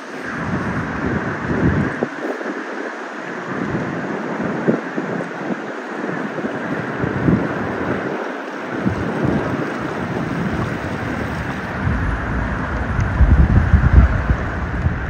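Wind buffeting the microphone in irregular gusts over a steady hiss, with the heaviest gusts near the end.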